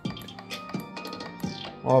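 Music playing through a Gradiente GST-107 vertical soundbar tower, with sustained notes over a deep beat about every three-quarters of a second, while its bass level is being stepped up.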